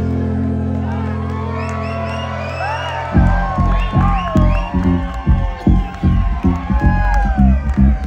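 Live music at a loud concert: a held low chord for about three seconds, then a pulsing low beat kicks in, with the crowd cheering and whooping over it.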